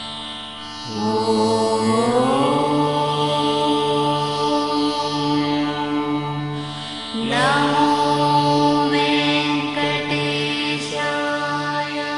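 Devotional mantra chanting over a steady musical drone. Two chanted phrases rise in pitch, one about a second in and another about seven seconds in.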